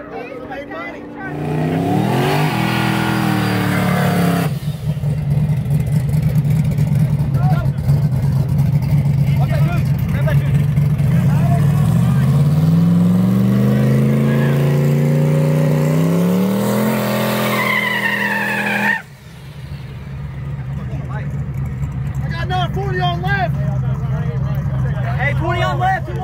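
Drag car engine revving hard and held at high revs, climbing in pitch twice, with tyre smoke from a burnout before a street race. Near the end the sound cuts off abruptly and a lower, steadier engine rumble follows with voices over it.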